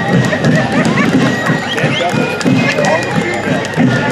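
Fife and drum corps playing as it marches past, faint high fife notes held over the band, with people talking nearby.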